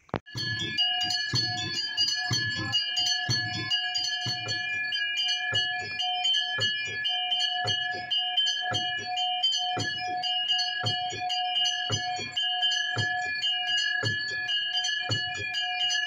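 Temple bells ringing in rapid, continuous strikes during an aarti, starting suddenly, with low thumps beating along about twice a second.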